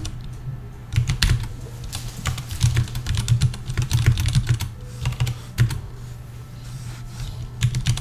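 Computer keyboard typing: clusters of keystrokes in several short bursts with brief pauses between them.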